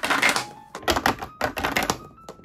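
A hollow plastic egg capsule rolling out of a toy crane game's exit tunnel and down its plastic slide, rattling: several quick runs of hard plastic clicks and taps.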